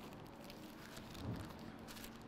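Faint rustling of thin Bible pages being leafed through at a lectern, with one soft low thump a little over a second in.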